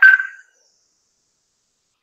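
A brief, clipped bit of a man's voice right at the start, then dead silence.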